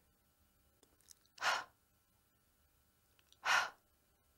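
A woman makes the /h/ letter sound twice, about two seconds apart. Each is a short, voiceless, breathy puff of air.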